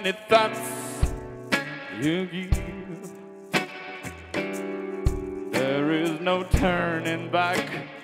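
Live acoustic rock song: a man sings over strummed acoustic guitar, with deep thuds marking the beat every couple of seconds.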